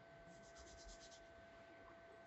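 Faint, quick run of about eight scratchy strokes in under a second as fingers rub through oiled hair, over a faint steady hum.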